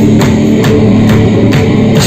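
A live metal band playing loud: electric guitars and bass over a drum kit keeping a steady beat of about four hits a second.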